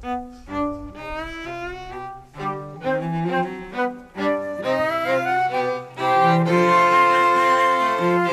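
A small live string ensemble of violin and cello playing classical music. It starts with short, separate notes and a quick rising run, then swells into louder held chords about six seconds in.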